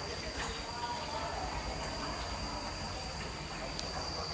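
Indistinct chatter of people on the boats, not close enough to make out words, over a steady high-pitched hum and a low rumble.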